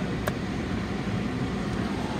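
Steady running noise of a 2014 Ford Taurus Police Interceptor heard from inside its cabin, the idling engine and air-conditioning fan, with a single faint click about a quarter second in.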